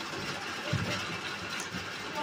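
Steady background noise with no clear events, in a pause between spoken sentences.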